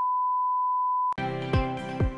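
Steady test-tone beep, the one-pitch sine tone that goes with a colour-bar test card, cutting off about a second in. Music with a kick drum then starts.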